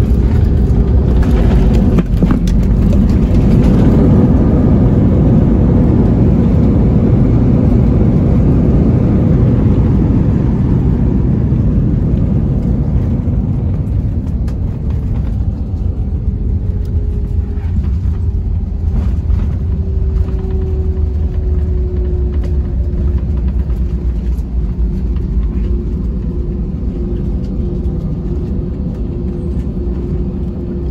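Jet airliner rolling out on the runway after landing: a loud rumble of engines and wheels, strongest in the first few seconds and slowly fading as the aircraft slows. In the second half a steady engine whine slowly falls in pitch.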